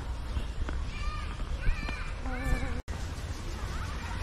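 Three or four short, arching animal calls in quick succession over a steady low rumble.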